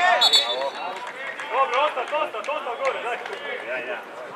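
Men's voices calling and shouting across a football pitch, with a short, high referee's whistle blast just after the start.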